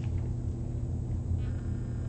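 Room tone: a steady low hum with no speech.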